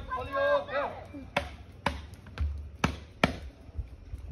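A hula chant sung by voices ends about a second in, followed by five sharp drum strikes spaced roughly half a second apart, each with a low thump.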